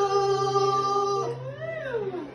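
The last long sung note of the song, held steady over acoustic guitar and cut off a little past a second in; then a voice slides up and back down in pitch.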